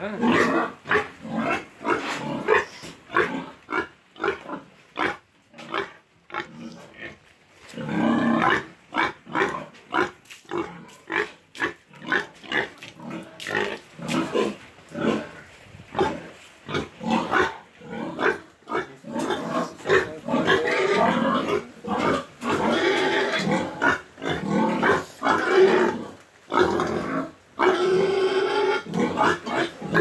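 Domestic pigs in a pen, grunting in quick, short repeated calls. In the last third the calls grow longer, louder and more continuous.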